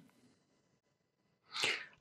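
Near silence, then one short, sharp rush of breath with no voice in it, about a second and a half in.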